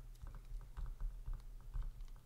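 Faint, irregular clicking of computer keys being typed, several clicks a second, over a low steady hum.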